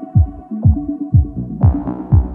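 Progressive house music: a four-on-the-floor kick drum about twice a second under a bassline and a held synth chord. A brighter synth chord comes in about a second and a half in.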